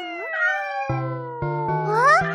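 A cartoon cat meow sound effect over a slowly falling whistle-like tone, with a few low musical notes coming in about a second in.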